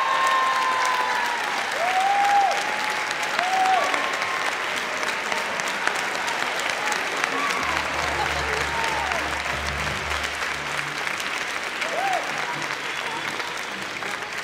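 Audience applauding steadily, with a few cheers rising and falling in pitch over the clapping.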